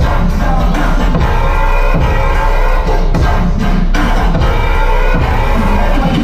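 Electronic bass music from a live DJ set, played very loud over a club sound system, with a heavy, steady sub-bass under the beat.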